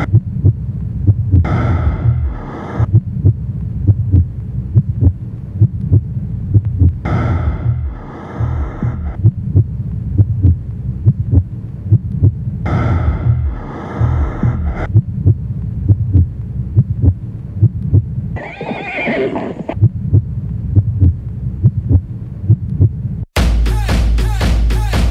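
A sound-effect track: a deep, rhythmic heartbeat-like throb runs under a horse neighing three times, about six seconds apart, with another, shorter call about 19 seconds in. Near the very end the throb cuts off and a loud music track starts.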